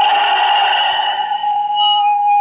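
Steady high-pitched whistle of public-address feedback ringing in the hall recording, with a second, higher tone above it. A rush of noise sits under the whistle for the first second and a half, then fades.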